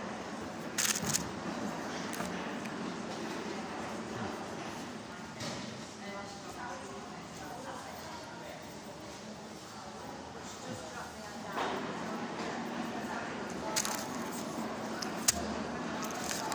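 Chewing a flaky-pastry vegan sausage roll, with a few sharp crackles and clicks about a second in and twice near the end, over a steady background of indistinct voices.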